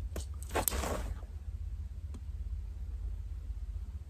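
Brief rustling from handling an Adidas Adizero Prime SP track spike in the first second, then a single faint click about two seconds in, over a low steady hum.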